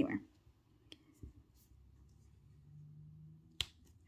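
Faint handling of paper planner stickers: a light tick about a second in and one sharp click near the end.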